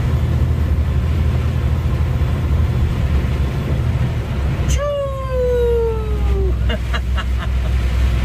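Truck diesel engine droning steadily under load on an uphill climb, heard from inside the cab with road and rain noise. About five seconds in, a sudden rush of air and a falling whistle lasting about two seconds: the turbocharger winding down.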